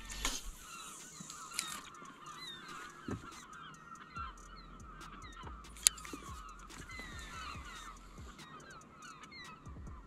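A flock of birds calling faintly, many short overlapping calls running on without a break. A single sharp click about six seconds in.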